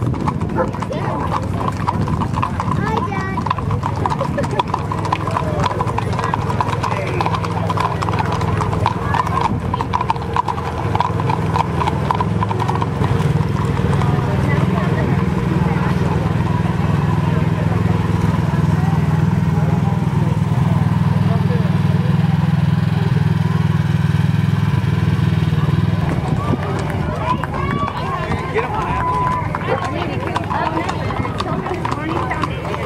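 Horse hooves clip-clopping on asphalt as mounted riders pass. From about the middle, a Polaris Ranger side-by-side's engine runs in a steady low hum as it drives past, then fades near the end as more horses come by.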